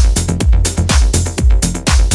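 Melodic house dance music from a live DJ mix: a steady four-on-the-floor kick drum at about two beats a second, with a bass line and hi-hats.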